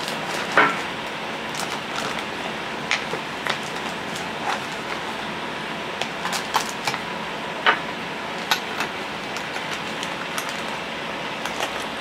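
Clear plastic toiletry pouch crinkling while small bottles and jars are pushed into it, with scattered light clicks and knocks of the containers, over a steady background hiss.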